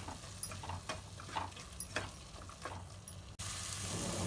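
A spatula stirring a thick onion-tomato masala with freshly added ground spices in a non-stick pot, with scattered light scrapes and taps against the pan over a faint sizzle of the frying masala.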